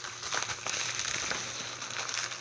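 Plastic Priority Mail padded envelope crinkling and rustling as it is handled, with irregular small crackles.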